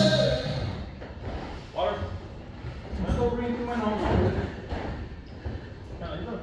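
People talking at a distance in a large, echoing gym, the voices indistinct. Background music stops just after the start.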